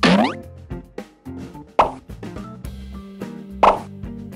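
Light background music with three cartoon pop sound effects laid over it: a long rising bloop at the start, then two shorter pops, one a little under two seconds in and one near the end.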